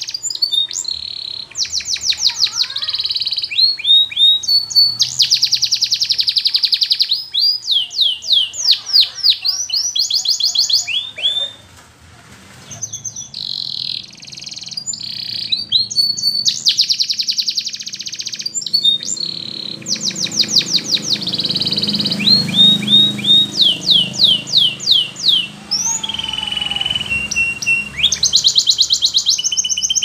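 Domestic canary singing in the Russian flute style: a long, unbroken run of fast trills and rolls of quick sweeping notes, with a short pause about twelve seconds in.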